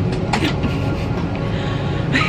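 Steady low rumble of an airliner's cabin, with the engines and air system running.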